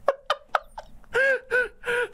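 A woman laughing: a few sharp gasping breaths, then three short pitched bursts of laughter from about a second in.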